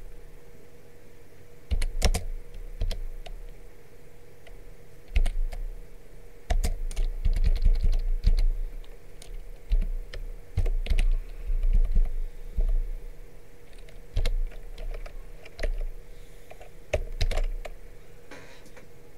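Computer keyboard typing in short, irregular bursts of keystrokes, with a faint steady hum underneath.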